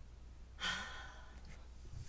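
A woman's breathy sigh, about half a second long, starting just after half a second in, as she pauses to look over her colouring.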